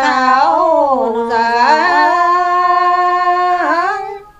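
An elderly woman singing a Dao-language folk song unaccompanied, drawn out with slow wavering glides, then settling into a long held note in the second half that dips near the end.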